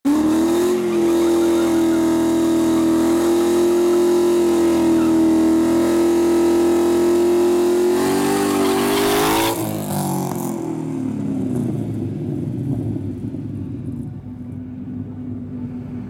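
2015 Mustang GT's 5.0 V8, with long-tube headers and an X-pipe exhaust, held at steady high revs during a burnout with the rear tyres spinning. The revs climb briefly, then drop off sharply about nine and a half seconds in. After that the engine runs at low revs as the car rolls forward.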